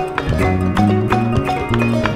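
Instrumental Malian ensemble music: plucked ngoni and struck balafon over a bass line and hand percussion, in a quick, even pulse of sharp notes.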